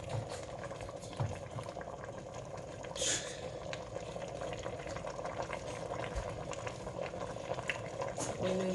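Tilapia in tomato and chili sauce boiling hard in a pot, a steady dense bubbling, with a brief hiss about three seconds in.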